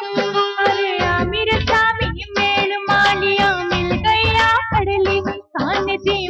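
Rajasthani devotional Holi song: a high-pitched voice sings over a held note and a steady beat, with a short break near the end.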